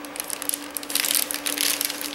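Clear plastic cello bag crinkling and crackling as hands open it and pull out die-cut paper ephemera pieces, a dense, irregular rustle throughout.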